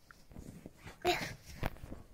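A young child's brief wordless vocal sound about a second in, amid soft rustling and handling noise.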